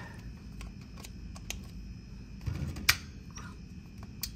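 Small plastic and metal clicks and taps as a new three-pole HVAC contactor is handled and its plunger pressed in to work the clipped-on auxiliary switch, with one sharp click about three seconds in.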